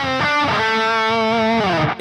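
Friedman electric guitar played through an amp: the end of a simple three-note phrase, with a short note and then a long held note given smooth, even finger vibrato. Near the end the pitch slides down as the note is let go.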